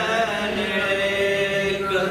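A man's voice chanting an Urdu devotional praise poem (manqabat), drawing out a long held note with no clear words that bends in pitch near the end.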